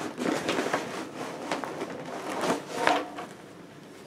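Crinkling and rustling of a shiny plastic tote bag and packaging being pulled out of a cardboard box, in irregular crackles that die down in the last second.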